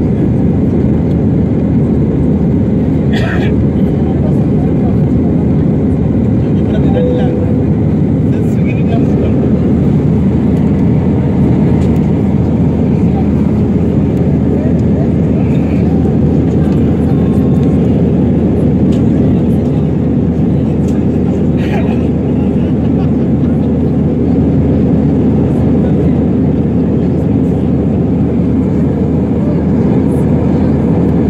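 Steady, loud cabin noise of an Airbus A319 in the climb: a deep, even rumble of the jet engines and airflow, heard from a window seat.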